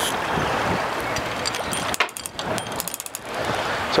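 Wind buffeting the microphone over the sea on an open boat deck, a steady rushing noise. About halfway through there is a sharp click, followed by a short run of rapid light ticks while the wind eases for a moment.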